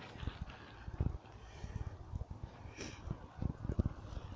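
Irregular soft low thumps and knocks from a hand-held camera being moved about, with a brief hiss about three seconds in.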